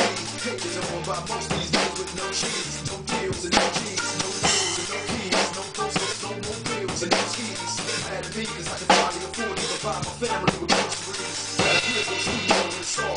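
Acoustic drum kit played live with sticks, with kick, snare and rimshot strokes, over a recorded hip-hop backing track whose bass line steps between held low notes.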